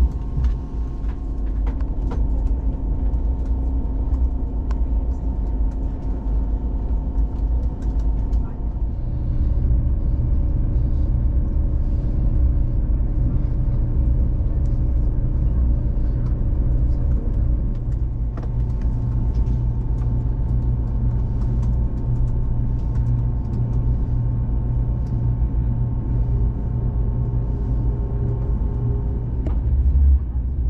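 Inside a moving ICE-T electric train: a steady low rumble of the running gear with faint whining tones from the drive that change pitch in steps, a little under a third of the way in and again past halfway, the rumble growing slightly louder at the first change.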